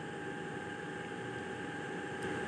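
Quiet, steady background hiss with a faint, thin steady whine, and no distinct sound events.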